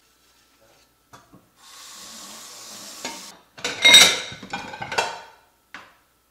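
Tap water running for a couple of seconds while a white ceramic plate is rinsed. Then the plate clatters and rings as it is handled and set into a plastic dish rack. The clatter is loudest about four seconds in, with lighter knocks after it.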